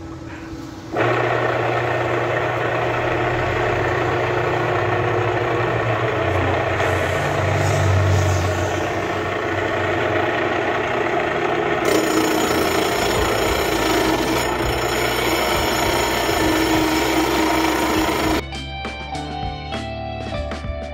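Homemade table saw, an electric gate motor spinning a circular saw blade on a bicycle axle, switched on about a second in and running steadily at a constant pitch with no cutting. The machine stops near the end and music follows.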